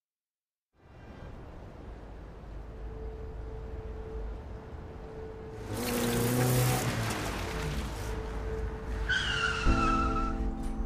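An SUV driving up with its engine running, a loud rush of tyre noise about six seconds in, and a falling squeal of tyres near the end as it brakes to a stop.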